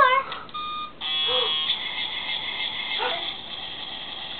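Electronic toy sound effect: a short beep, then a steady buzzy electronic tone that sounds for about three seconds.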